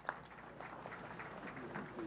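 Audience applause: a few scattered claps at first, thickening into steady clapping within the first half second.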